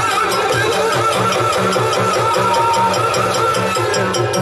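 Yakshagana ensemble music: chende and maddale drums beat a steady rhythm of about three to four strokes a second, with crisp metallic strokes above and a held, slightly wavering high note.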